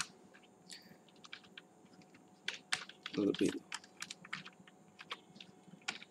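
Typing on a computer keyboard: a run of irregular, quiet keystrokes.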